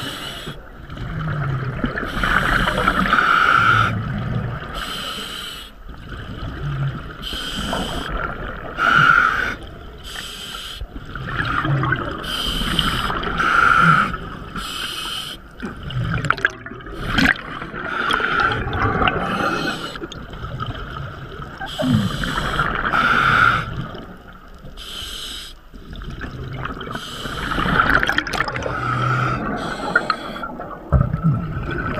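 Scuba diver breathing through a regulator underwater: bursts of exhaled bubbles rushing out every second or two, with bubbling and gurgling in between.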